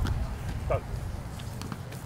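Outdoor ambience of a rugby training field with a steady low rumble and faint movement of players running on grass. A brief voice calls out less than a second in.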